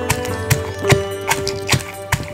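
Stone pestle pounding in a stone mortar, five evenly spaced knocks, about two and a half a second, over background music with long held notes.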